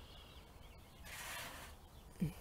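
Faint outdoor ambience with distant small birds chirping, and a brief rustling hiss about a second in.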